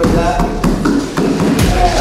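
Voices and background music, with a few short thuds of bodies hitting a foam mat during grappling.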